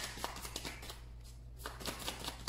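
A deck of tarot cards being shuffled by hand: a series of soft card clicks and flutters. It pauses briefly about a second in, then picks up again.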